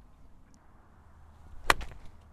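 Golf iron striking a ball off grass turf: one sharp impact near the end.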